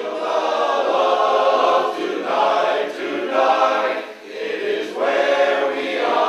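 Barbershop harmony singing: unaccompanied voices in close harmony holding sustained chords, with short breaks between phrases.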